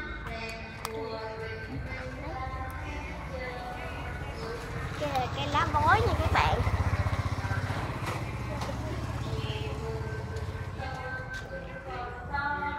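A motor vehicle engine passing by: a low rumble that builds about five seconds in, is loudest around six to seven seconds, then slowly fades. Voices and snatches of music can be heard in the background.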